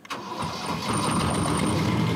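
A narrowboat's small diesel engine starting on the key: it starts abruptly and settles into a steady run within about a second.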